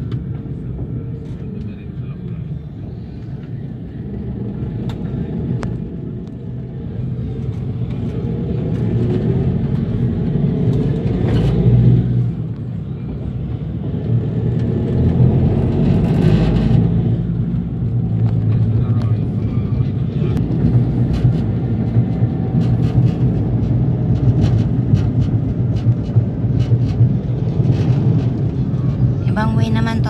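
A motor vehicle's engine running steadily while driving along a road, with road and wind noise; it gets louder over the first ten seconds or so as it picks up speed.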